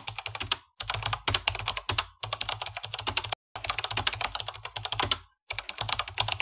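Computer-keyboard typing sound effect: rapid key clicks in several runs of one to two seconds with short pauses between them, matching on-screen text being typed out.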